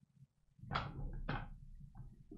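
Two loud slaps of the hands, about half a second apart, over a low rumble of movement close to the microphone.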